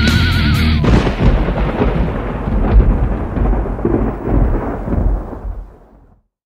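End of a loud guitar, bass and drums band track: a held, wavering guitar note breaks off about a second in, giving way to a noisy, rumbling wash of distorted instruments that dies away and cuts to silence near the end.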